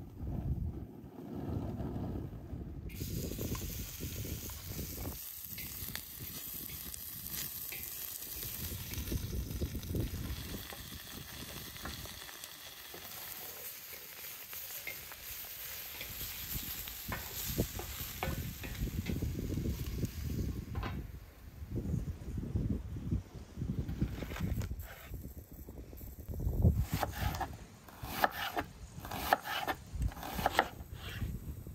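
Pieces of lamb liver, lung and heart sizzling as they fry in a wide black metal pan, stirred and scraped with a wooden spatula. Near the end, a knife chops onion on a wooden cutting board in sharp repeated knocks.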